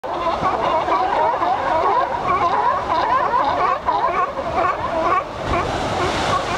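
A dense chorus of California sea lions calling over one another, many overlapping rising-and-falling calls with no gaps, over the wash of breaking surf.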